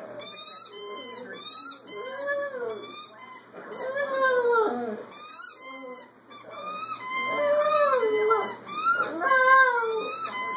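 Small dogs howling and whining, a series of short calls that rise and fall in pitch, coming faster and louder in the second half.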